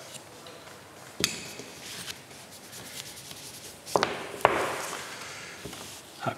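Fingers rubbing and pressing a paper sticker onto a card on a plastic-covered table, with a few sharp taps; the loudest pair comes about four seconds in, followed by a rustling rub.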